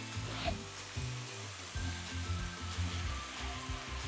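Spinach sizzling steadily in a hot frying pan, stirred with a plastic spatula as milk is poured in to make creamed spinach.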